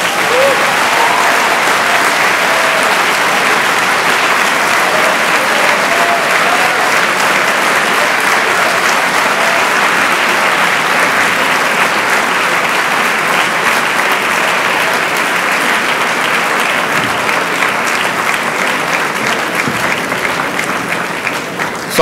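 Audience applauding long and steadily, with a few voices audible among the clapping; the applause eases off slightly near the end.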